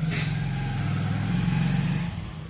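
A steady low droning hum, growing louder through the middle, with a brief hiss near the start.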